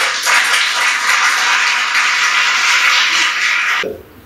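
Applause, a crowd clapping at a plaque unveiling: a loud, even clatter that stops abruptly just before the end.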